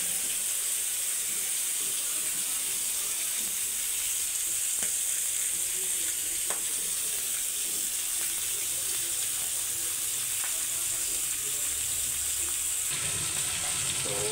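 Fish pieces shallow-frying in hot oil in a pan, a steady sizzle, with a few faint clicks.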